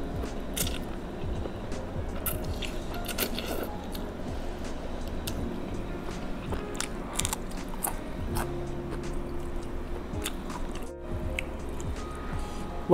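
Close-up eating sounds: wet chewing and slurping of thin rice noodles in tom yum broth, with irregular crisp bites as she eats a fresh green chili alongside. Soft background music plays underneath.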